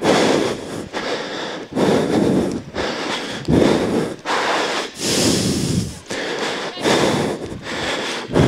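Heavy breathing with rubbing, close on the microphone, coming in loud irregular puffs about once a second.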